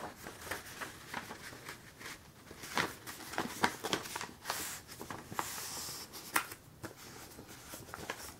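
Sheets of white paper being handled and folded in half by hand: a run of short paper crackles and rustles, with a softer swish of paper sliding a little past the middle.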